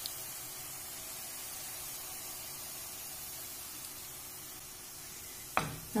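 Vegetable vermicelli frying in a steel pan: a steady sizzle. A brief sharp sound comes near the end.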